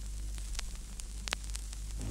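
Vinyl LP surface noise in the silent groove between tracks: a steady hiss over a low hum, with a few scattered clicks.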